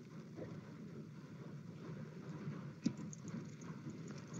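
Faint low hiss and rustle from an open microphone during a pause in speech, with a single sharp click about three seconds in.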